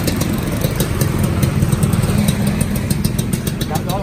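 Suzuki Xipo two-stroke underbone motorcycle engine running steadily at a low, even speed. The engine is freshly rebuilt and still tight, not yet run in.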